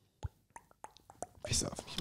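Quiet room with a handful of faint, irregular clicks and taps, then a brief quiet whisper of voice near the end.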